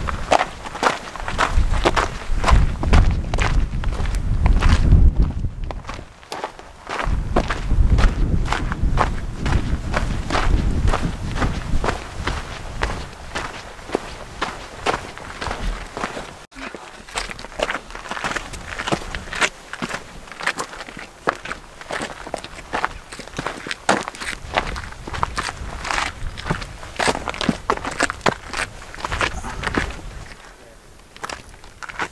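Footsteps crunching on a rocky gravel mountain trail in a steady walking rhythm, with a low rumble over roughly the first ten seconds.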